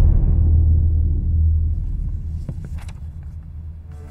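A deep, loud low rumble from the dramatic film score: a bass boom that fades away over the first three seconds. A couple of faint clicks come about two and a half to three seconds in.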